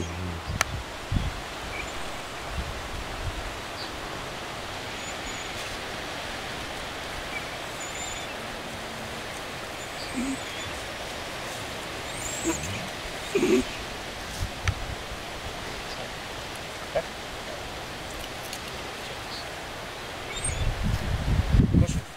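Steady outdoor background noise of wind in trees. A few faint short chirps and soft knocks are scattered through it, and a low rumble of wind on the microphone swells near the end.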